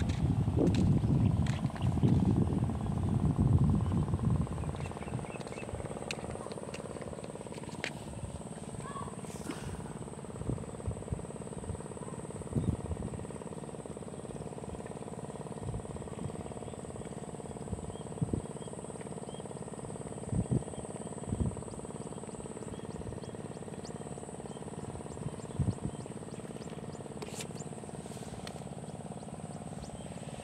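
Wind buffeting the microphone for about the first four seconds, then a quieter steady outdoor background with a faint high-pitched tone and scattered light knocks.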